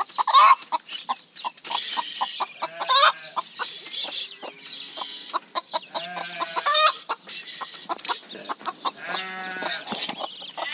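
Mother hen clucking in quick runs of short calls, with louder, longer calls about half a second in, around three seconds, near seven seconds and near the end. She is a hen raising guinea fowl keets.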